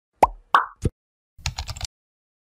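Animated-intro sound effects: three quick cartoon pops in the first second, then a short crackling rattle just before the end.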